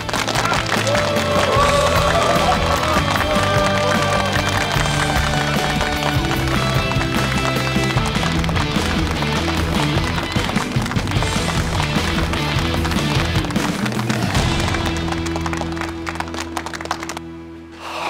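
Background score of sustained musical tones over a crowd applauding. The applause stops suddenly about a second before the end, leaving a quieter held note.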